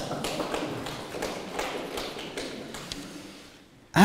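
Audience clapping and laughing in scattered, irregular claps that die away toward the end.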